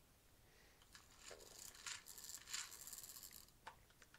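Faint handling noise from a small plastic toy turned over in the fingers: light rustling with scattered small clicks, from about a second in until near the end.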